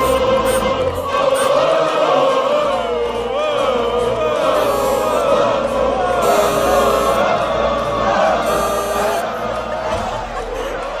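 Music with a chorus of voices singing a melody that keeps bending up and down.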